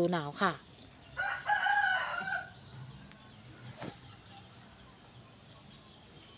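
A rooster crowing once, starting about a second in and lasting about a second and a half.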